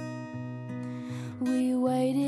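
Acoustic guitar strummed, its chords ringing on, with a louder strum about a second and a half in.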